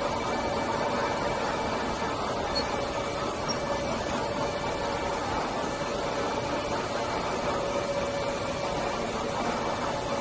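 Steady ventilation and machinery hum in an accelerator tunnel: an even rush of air noise with a few constant tones over it.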